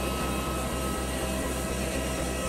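Steady jet aircraft noise on an airport apron: an even rushing hum with a thin, steady high whine.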